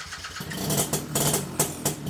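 A small motorcycle engine running unevenly.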